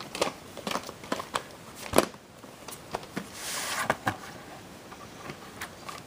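A plastic VHS cassette and its case being handled: a string of light clicks and knocks, the loudest about two seconds in, with a brief rustle a little after three seconds.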